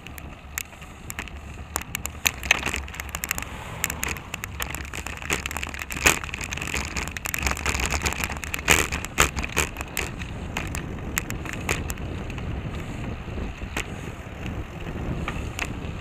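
Wind rushing over the microphone of a camera on a moving bicycle, with a steady low road rumble and frequent short sharp clicks and knocks.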